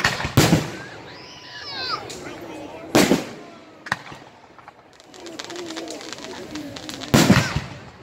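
Aerial fireworks shells bursting: three loud bangs, one just after the start, one about three seconds in and one near the end, each trailing off in an echo, with a run of fine crackling in the last few seconds.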